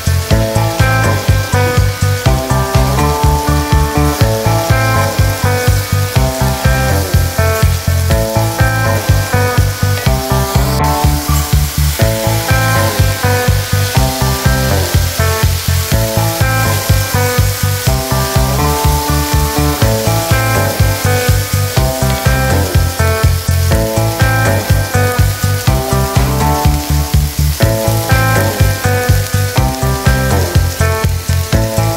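Mushrooms, onions and dry orzo sizzling in a hot cast-iron skillet as a wooden spoon stirs them, the pasta toasting in butter before the stock goes in. Background music with a steady beat plays throughout.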